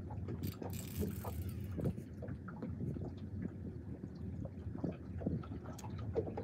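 Steady low rumble of wind on the microphone aboard an open boat, with scattered faint clicks and a short hiss about a second in.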